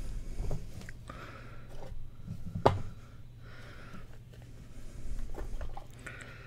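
A hard black Panini Flawless trading-card briefcase being handled and opened by hand: soft rustling and sliding, with one sharp click, like a catch letting go, about two and a half seconds in.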